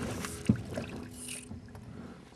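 Water splashing beside a fishing boat as a hooked crappie thrashes at the surface, with a single sharp knock on the boat about half a second in.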